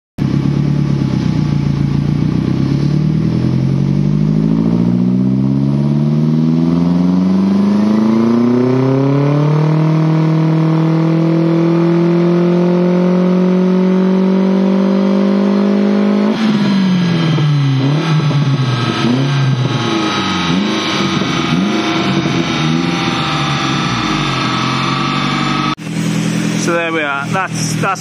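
1987 Saab 900 Turbo's 16-valve turbocharged four-cylinder engine doing a full-load pull on a rolling-road dyno, the engine speed climbing steadily for about sixteen seconds. The engine then comes off load and the revs fall away, dipping and rising a few times as it slows. Speech takes over in the last couple of seconds.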